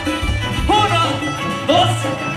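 A regional Mexican band playing live through a PA: a steady tuba bass line under guitars and percussion, with short sliding melodic phrases about a second apart.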